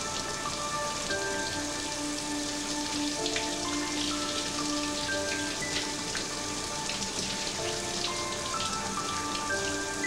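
Shower spray running steadily over a person's head and body, an even hiss of falling water. Under it, a slow melody of long held notes that change pitch every second or so.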